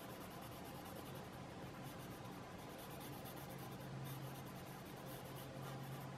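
Faint scratching of a coloured pencil shading across paper, with a low steady hum underneath.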